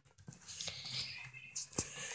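Faint rustling and a few soft knocks from a phone being carried by someone walking, with one sharper click near the end.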